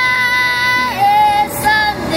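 A child's voice singing a long held note that steps down in pitch about a second in, then a short higher note near the end.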